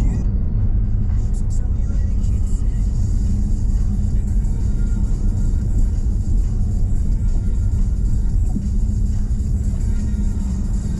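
Steady low rumble of a car's engine and tyres heard from inside the cabin while driving at low speed, with music playing in the background.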